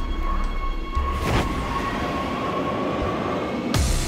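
Background music mixed with train sound: a steady high whine holds through most of it over a low rumble. A sudden loud swell of noise comes near the end.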